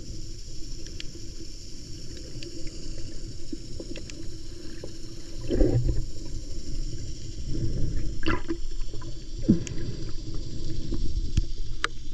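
Muffled underwater sound from a camera held under seawater: a low, steady water rumble with scattered small clicks and a few louder short rushes of water, about six and eight seconds in.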